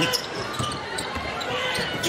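A basketball being dribbled on a hardwood court: faint repeated bounces over arena background noise.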